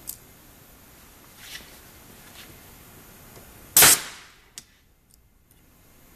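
Stamp Perfect SS pneumatic ring marking machine firing its internal hammer blow with the air pressure turned up to about 90: a single sharp, very loud bang about four seconds in as the stamp is driven into a stainless steel ring. A few faint clicks come before it.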